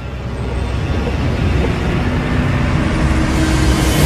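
Horror-trailer sound-design swell: a dense rumble and noise haze that grows steadily louder, with a low droning tone entering about halfway through.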